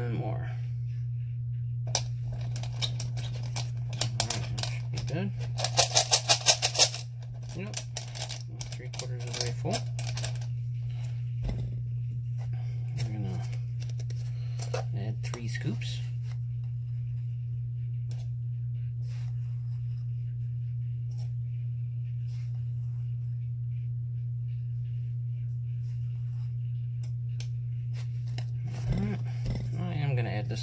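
Small tumbling stones and media clicking and knocking as they are handled and dropped into a rock tumbler barrel, with a quick rapid rattle about six seconds in, under a steady low hum.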